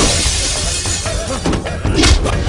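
Glass shattering, loud at first and dying away over the first second, over a dramatic film score with heavy low beats.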